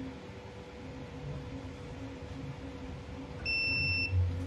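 A single electronic beep from a small battery spot-welding machine near the end, a clear tone held for under a second, over a faint steady electrical hum.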